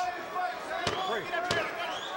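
Two sharp knocks in a boxing arena, about two-thirds of a second apart, over a background of crowd murmur and commentary.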